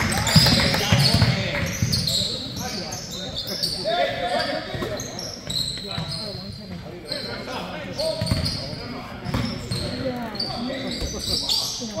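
Basketball being dribbled on a hardwood gym floor, with scattered bounces, short high squeaks and indistinct voices echoing in a large gym.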